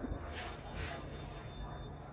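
Quiet background noise with a faint hiss and a soft, brief rustle in the first second.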